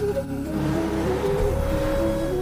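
Background music with steady held notes; a rushing noise joins it about half a second in.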